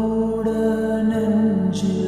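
Slowed-down, reverb-heavy lofi remix of a Tamil song: a low, drawn-out, chant-like vocal line over a steady bass, with the bass note changing about halfway through.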